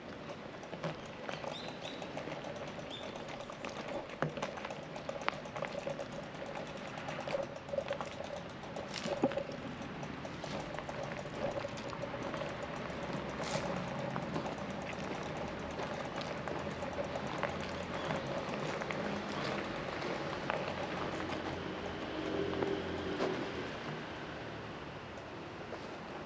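Outdoor ambience with scattered light clicks and ticks throughout, a faint steady hum over roughly the first half, and a soft low rumble later on.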